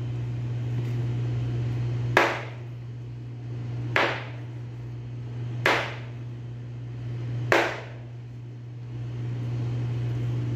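Large butcher's knife chopping through raw chicken pieces on a cutting board: four hard chops about two seconds apart, each with a short ringing tail, over a steady low hum.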